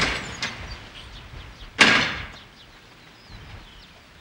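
A door slams about two seconds in and the bang dies away over half a second, following the fading tail of a louder crash at the start. Birds chirp faintly throughout.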